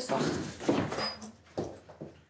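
Apartment front door being pulled shut as someone steps out, with a brief high squeak about halfway through.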